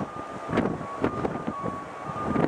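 Boeing 777-200LR on final approach, its GE90 jet engines giving a low rumble and a thin steady high whine that steps slightly in pitch, with gusts of wind buffeting the microphone.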